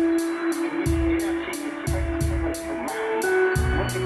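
Live electronic rock music: a steady machine-like beat with high ticks about three times a second and a low kick drum, under held synthesizer and electric guitar notes. A low bass line comes in near the end.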